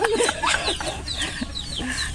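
People laughing heartily: a burst of laughter at the start, then quieter, breathy, high-pitched laughter.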